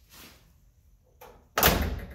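A 1969 Camaro's door being shut, closing with one loud, solid slam near the end, after a fainter knock a little before it.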